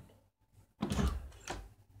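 An interior door's lever handle and latch worked and the door pushed open, starting a little under a second in and dying away before the end.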